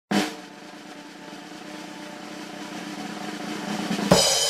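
Intro music: a sudden opening hit, then a drum roll that swells steadily louder.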